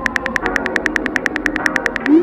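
Rapid on-screen phone keyboard clicks, about ten taps a second, as a text message is typed, over quiet background music.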